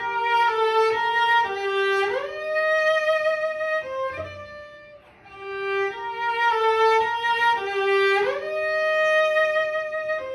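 Solo cello bowed in its upper range: a few held notes, then an audible upward slide into a higher sustained note. The same short shifting passage is played twice, as shift practice.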